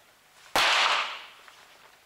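A single .22 calibre sport pistol shot, sharp and loud, about half a second in, followed by a short echo that dies away within about a second.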